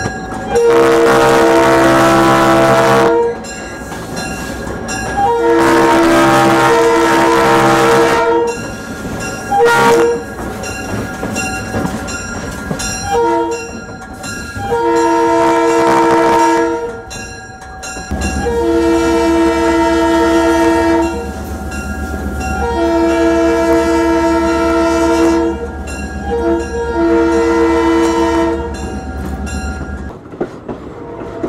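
Diesel locomotive multi-chime air horn sounding the grade-crossing signal, long, long, short, long, twice through. A low rumble from the locomotive runs beneath the blasts in the second half.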